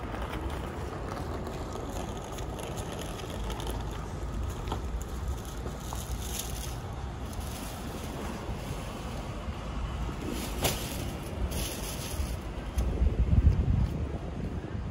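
Street ambience with a steady low rumble and wind buffeting the microphone, swelling to a loud gust near the end. A single sharp click about ten and a half seconds in.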